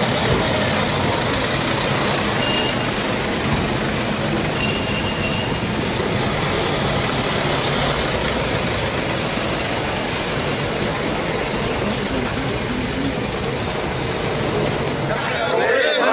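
Ambulance vans driving off, their engines heard under a heavy, steady outdoor noise, with two brief high beeps a few seconds in.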